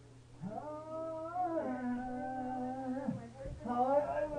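A person's long wailing cry: one drawn-out wavering note that drops to a lower held pitch about halfway and slides down as it ends. Another cry begins near the end.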